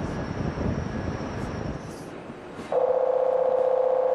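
Low rumbling background noise, then, a little under three seconds in, a loud steady electronic buzzer tone sounds for about a second and a half, typical of an alarm buzzer on a ship's bridge console.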